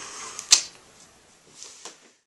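Camcorder handling noise: one sharp click about half a second in, then two faint clicks near the end.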